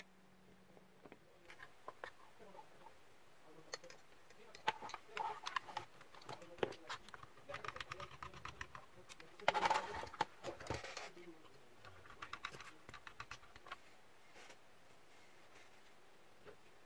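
Light irregular clicking, tapping and rustling of plastic and metal parts being handled, as a router's antenna board and casing are fitted back onto its heat sink, with a louder rustling scrape about ten seconds in.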